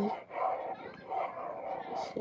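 A small kitten mewing, a couple of soft, high cries.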